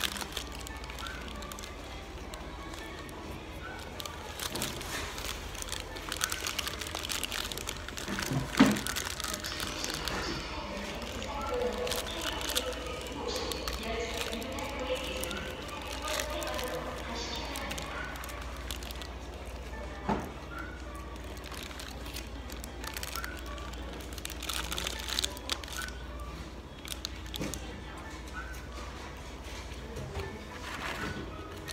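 Paper burger wrapper rustling and crinkling in the hands, with chewing, over indistinct background voices and music. A sharp knock comes a little under nine seconds in.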